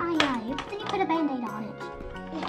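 A child's voice, drawn out and sliding down in pitch, over steady background music.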